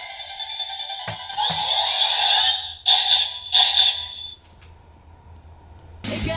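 Electronic sound effect from a battery-powered Kyuranger DX toy with a Kyutama loaded: two sharp clicks, then a synthesized tone with two louder pulses near the middle, which stops suddenly after about four seconds.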